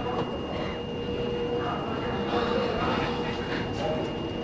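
A steady high-pitched whine over a noisy background, with faint voices.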